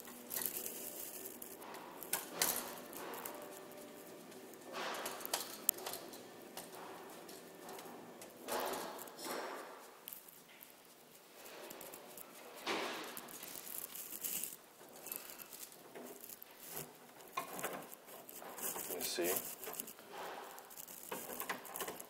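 Irregular small clicks, scrapes and rustles of gloved hands handling stiff 12-gauge wire and a receptacle, with a screwdriver working on its terminal screws.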